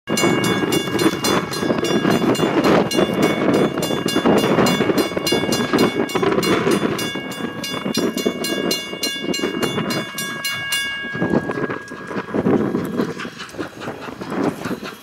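Steam locomotive running with rapid, even exhaust beats and a long whistle chord held over them. The whistle breaks briefly about halfway through. Beats and whistle cut off about eleven seconds in, leaving a rough rumbling noise.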